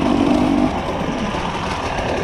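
Husqvarna TE300i two-stroke enduro motorcycle engine running as the bike is ridden along a dirt trail. It holds a steady note for the first moment, then gives way to a rougher rumble.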